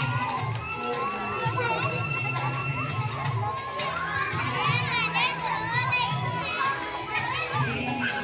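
A crowd of young children shouting and cheering, with a Kannada song's steady beat playing underneath.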